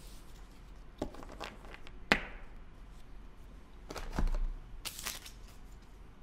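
Trading cards and a foil card pack being handled on a tabletop: a few light taps and clicks, one sharp click about two seconds in, and a short papery rustle near the end.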